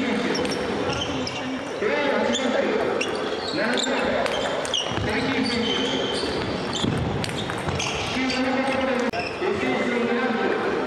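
Table tennis ball clicking off the table and bats in quick, irregular knocks during a rally, over steady chatter of voices.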